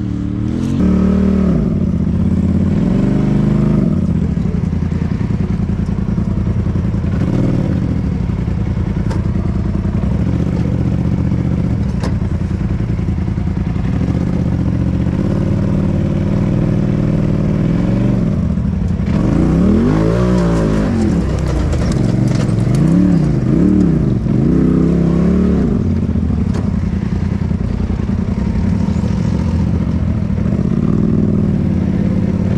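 Side-by-side UTV engine running throughout. In the second half it revs up and down several times in quick succession as the machine works over a rutted dirt trail.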